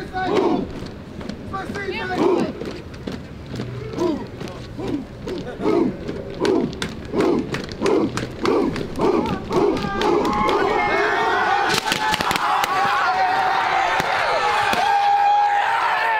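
A group of voices chanting in rhythm, about two shouts a second, then breaking into loud sustained yelling and cheering about ten seconds in, with a few sharp pops and a long held tone near the end.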